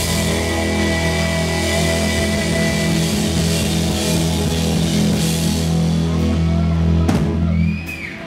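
Live rock band of electric guitars, bass and drum kit holding a sustained chord under a wash of crashing cymbals. The sound cuts off shortly before the end.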